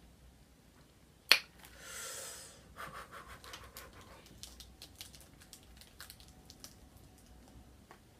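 A boxed perfume being opened by hand: one sharp click about a second in, then a short rustle of packaging and a run of light crackles and clicks as the wrapping and box are handled.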